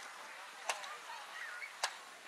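Two short, sharp clicks about a second apart.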